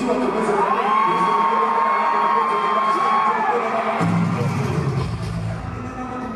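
Live rock concert music in an arena, recorded from the crowd, with the audience cheering. A long held high note carries over the band with the bass dropped out, then the heavy low end comes back in about four seconds in.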